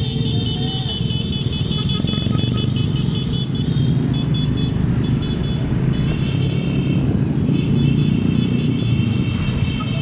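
Motorcycle engines running and road noise from riding in a slow convoy of motorcycles, with high tones sounding on and off above the rumble.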